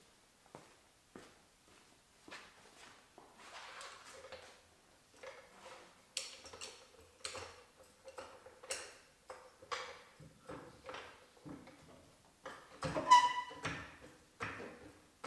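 Metal clicks and knocks from a steel trolley jack being handled and set under the car, roughly one a second, with a louder ringing metal clank near the end.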